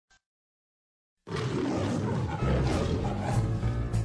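The MGM lion's roar, starting suddenly about a second in after silence. Music with a steady beat comes in under it about halfway through.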